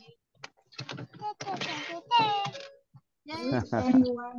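People speaking over an online video call, with a few short clicks between the words.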